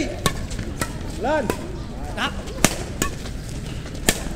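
Badminton rackets hitting a shuttlecock in a fast rally: a series of sharp cracks spaced a fraction of a second to a second apart, with a player's short shout about a second in.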